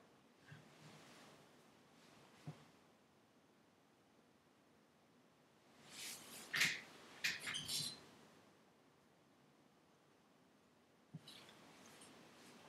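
Faint room tone broken by a single click, then a short burst of clicks and rustling handling noise about six to eight seconds in, and another click near the end.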